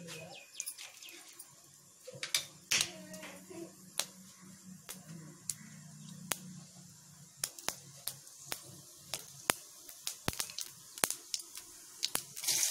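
Oil heating in an iron kadai, giving scattered sharp pops and crackles about once or twice a second.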